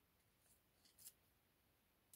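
Near silence with a few faint, short rustles of a paper colouring-book page being handled, the loudest about a second in.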